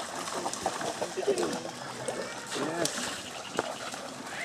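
Water splashing and sloshing in a shallow, stony river as feet wade through it and a dog splashes about, with scattered sharp clicks.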